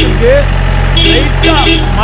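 Mahindra jeep's engine running under way on a rough jungle track, a steady low rumble beneath voices.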